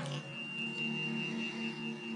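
Background music for a horror narration: a low sustained drone with a thin, high, steady ringing tone held over it.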